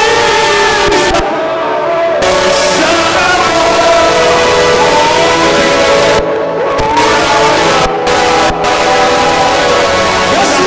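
Loud live church praise music from a band, with voices singing sustained, gliding lines.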